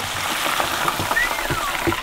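Battered frog legs frying in hot oil in a deep fryer: a steady, even sizzling hiss. A brief whistle-like chirp rises and falls about a second in.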